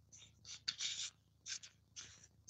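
Fingers handling the streaming phone or camera: several short, scratchy rubbing sounds close to the microphone.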